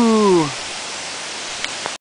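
A man's whooping 'woo' trails off, falling in pitch, about half a second in. Under it and after it is the steady rushing hiss of water running down a mountain gorge, with two small clicks near the end.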